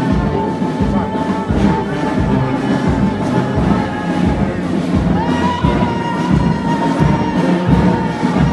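Brass band music with a steady bass drum beat, about two beats a second, under held high notes.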